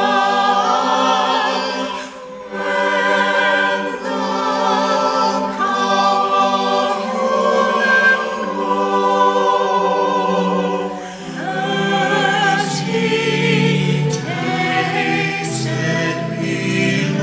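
Small mixed choir of men and women singing unaccompanied in slow sustained chords, with short breaks for breath about two seconds in and about eleven seconds in.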